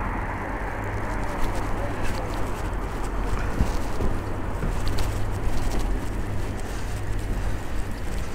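Wind rushing over the camera microphone while riding a bicycle, with a steady low rumble of tyres rolling on tarmac.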